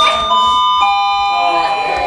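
Public address system's attention chime: three notes stepping down in pitch, each ringing on under the next. It is the lead-in to a recorded announcement that the fire alarm system is about to be tested.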